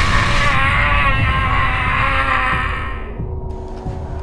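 Added magical summoning sound effect: a loud low rumble under a hissing, wavering high layer, fading away over the last second or so.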